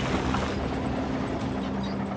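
Caterpillar D9N bulldozer's diesel engine running steadily with a low drone while the blade pushes dirt and a felled tree.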